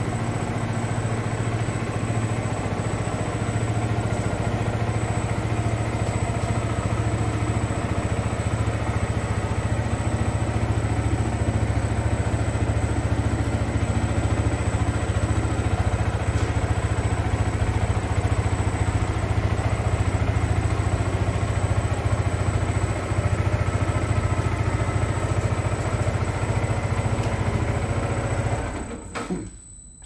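A 2014 Yamaha YZF-R125's 125 cc single-cylinder four-stroke engine idling steadily and smoothly, then cutting off near the end.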